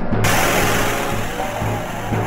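Electronic music with a low throbbing pulse. About a quarter second in, a sudden loud rushing crash sets in and slowly fades: a shattering-rock sound effect for an animated stone block bursting apart.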